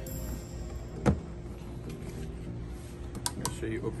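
A single sharp plastic snap about a second in as a ride-on toy car's side mirror is pressed into its mount, with a few lighter clicks near the end, over background music.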